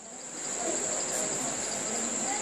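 Crickets trilling, a steady high-pitched tone running on without a break.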